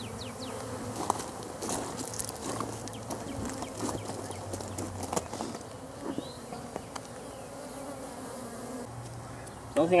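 Many honeybees buzzing in flight, a steady hum.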